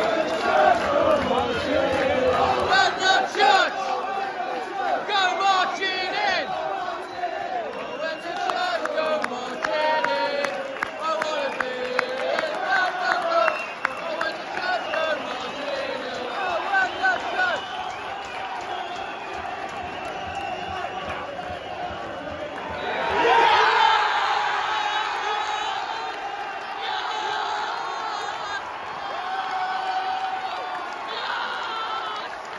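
Football crowd singing and shouting in the stands. About 23 seconds in, the crowd breaks into a loud cheer that dies down over the next few seconds.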